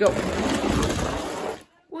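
Two die-cast pull-back toy cars running down a cardboard ramp track, a loud rattling rumble that stops suddenly after about a second and a half.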